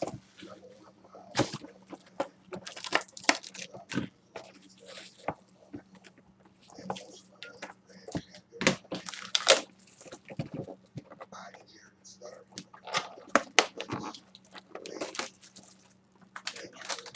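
Hands handling trading-card packs and boxes on a table: a scattered run of crinkles, rustles and light taps from foil pack wrappers, cardboard and shrink wrap.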